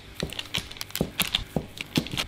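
Kitchen knife cutting down through a slab of firm fudge and knocking on a plastic chopping board: a quick series of sharp taps as each slice is made.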